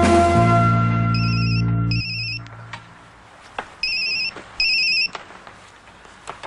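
Telephone ringing with a warbling electronic trill, in two double rings: two short rings, a pause, then two more. Background music fades out about two seconds in.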